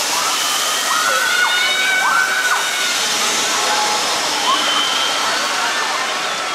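Riders screaming on an S&S Screamin' Swing pendulum ride, in long held screams through its first half and again near the end, over a steady rushing hiss.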